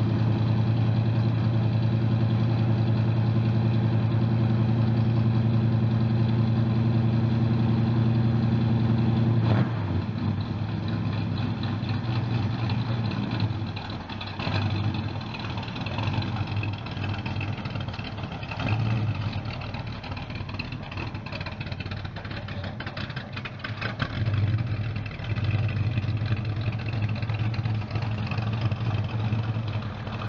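Engine of a 1941 Ford Sedan Delivery street rod running: a steady, even note for the first ten seconds or so, then it drops to a lower, uneven idle with a few short revs as the car pulls away.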